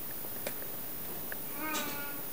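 A brief high vocal call near the end, cat-like in tags, follows a faint click about half a second in.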